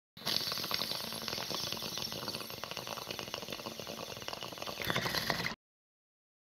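Dense crackling and rattling noise, full of tiny clicks, that cuts off suddenly about five and a half seconds in.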